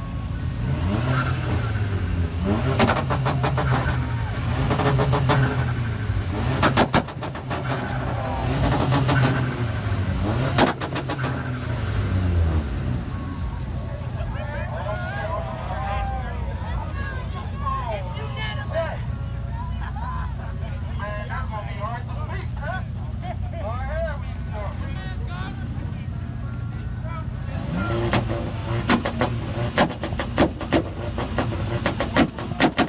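Car engine revving hard with sharp exhaust pops and bangs, typical of a two-step launch limiter. The revving and bangs fill roughly the first twelve seconds and return near the end; in between, the engine idles steadily under crowd chatter.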